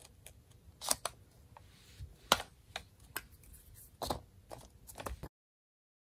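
Paper envelopes being handled and pressed on a table: soft rustling with scattered sharp clicks and taps, the loudest about two seconds in. The sound cuts off abruptly about five seconds in.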